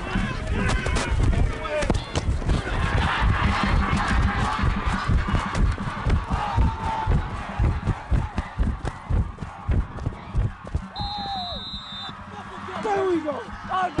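Quick rumbling thumps of running footsteps and jostling pads picked up by a football player's body mic, over crowd cheering and indistinct shouting. A few short shouts stand out near the end.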